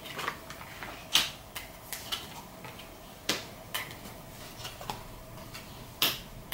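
Tarot cards being drawn and laid down on a cloth-covered table: a string of light, irregular clicks and taps, the sharpest about a second in and again about three seconds in.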